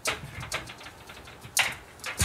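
Hammer striking the timber wall framing: three sharp knocks, irregularly spaced.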